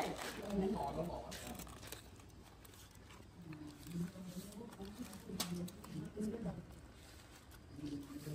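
Aluminium foil crinkling and tearing in a few short rustles as a foil-wrapped roast is unwrapped by hand, under low voices.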